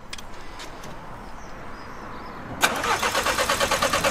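VW Golf GTI Mk7's 2.0 TSI four-cylinder engine cranking on the starter, a fast, even rhythm that starts suddenly about two and a half seconds in. It is the first start after fitting upgraded fuel pumps.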